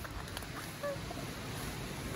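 Steady outdoor background noise with a low wind rumble on the microphone, broken only by a faint click and a couple of brief faint tones about a second in.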